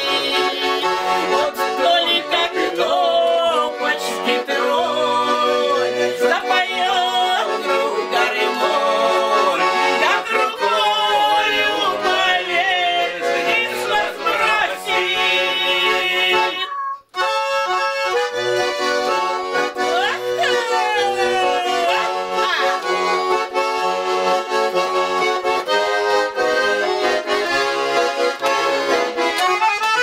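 Hand-held accordion playing a folk tune continuously. The sound cuts out for a moment just past the halfway point, then the playing carries on.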